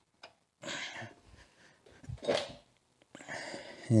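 A few short breathy sounds from a person, sniffs and huffs of breath, with a faint click near the start.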